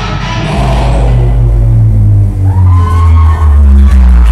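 Loud live heavy rock band playing through a PA. About a second in, the high cymbal wash fades back and low sustained bass and guitar notes carry the music.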